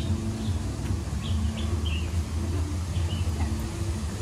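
Several short, high bird chirps in quick succession in the middle, over a steady low hum.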